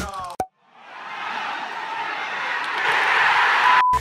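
Music cuts off with a short downward glide and a click. A hiss then swells steadily louder for about three seconds and ends abruptly with a brief high beep.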